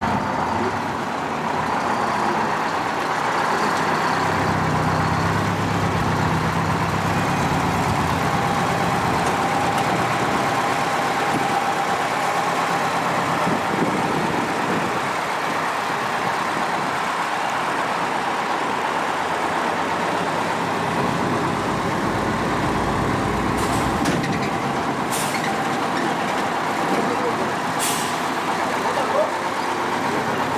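A large tour coach's engine running as the bus drives slowly along a street and pulls up. A few short, sharp noises come in the last few seconds.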